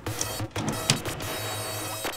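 Eurorack modular synthesizer patch playing quietly: a low hum with a few sharp clicks and a faint hiss. It comes from white-noise and reverb patterns clocked by the Batumi quad LFO, whose first LFO is now being frequency-modulated by the fourth LFO's sine wave.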